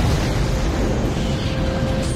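Film sound effect of a starship exploding as its hull collapses: a dense, continuous blast with a heavy low rumble.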